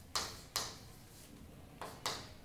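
Chalk writing on a chalkboard: three sharp taps of the chalk against the board, two close together near the start and one near the end.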